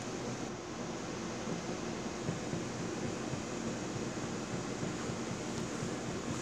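Steady background hum and hiss, like a fan or air conditioner running, with a faint tap about two seconds in.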